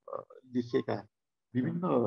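A man speaking over a video call, with a short pause about a second in before he carries on.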